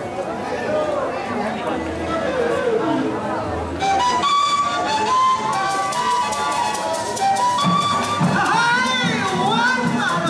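Crowd chatter, then about four seconds in a Colombian gaita (long cane duct flute) starts a melody of held notes, with shaken and struck percussion coming in behind it.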